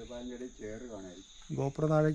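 Steady high-pitched drone of forest insects, two unbroken high tones, under a man's voice.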